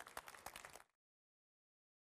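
Light, scattered applause from a small audience, sharp separate claps, cut off abruptly just under a second in, then dead silence.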